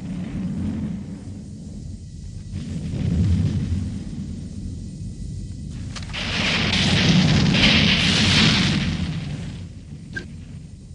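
Low rumbling booms that swell to a louder rushing roar about six seconds in, then fade away near the end.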